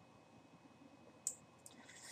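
Near silence in a small room, broken by a single sharp computer-mouse click a little over a second in, followed by a few faint ticks.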